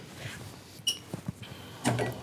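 A few light metallic clicks, one with a brief ring, as a screw is drawn out of the heater's sheet-metal side panel on a magnetised screwdriver.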